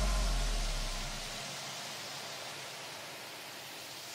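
A gap between two electronic background-music tracks. A low bass note fades out over the first second or so, leaving a steady hiss of noise.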